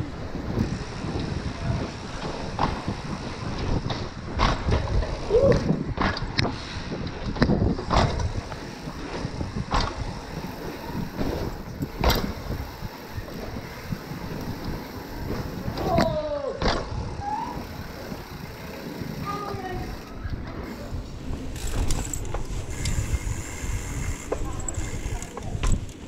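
Downhill mountain bike ridden fast over paved streets, heard from a camera on its handlebar: continuous wind rush and tyre rumble, with irregular sharp clacks and rattles as the bike hits bumps.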